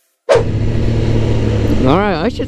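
A moment of silence, then onboard sound cuts in suddenly: a Suzuki GSX-R600 (Gixxer 600) inline-four running at a steady cruise, a constant low engine note under loud wind rush on the microphone.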